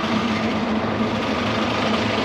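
A bus engine idling close by: a steady low hum with a faint steady whine above it.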